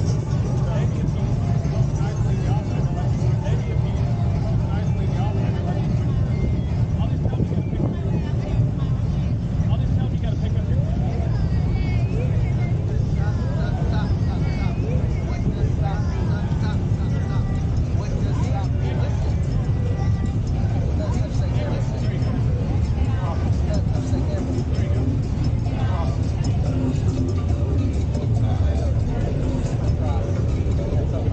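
Engines of Polaris Slingshot three-wheelers running as they drive slowly past one after another, a steady low rumble, with people's voices over it.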